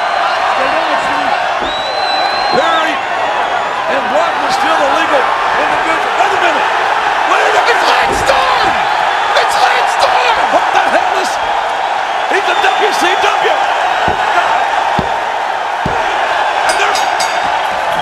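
Arena crowd, a dense mass of shouting, whooping and cheering voices. There are a few thuds on the wrestling ring mat, a group of them near the end as the referee slaps the canvas counting a pin.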